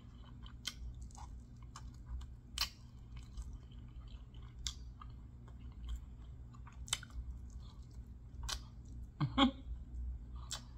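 Close-miked chewing of chicken wings, the meat bitten and eaten off the bone, with sharp wet mouth clicks and smacks every couple of seconds over a steady low hum.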